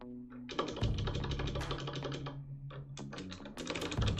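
Fast typing on a computer keyboard: a long run of rapid keystrokes, a short pause, then a second run near the end.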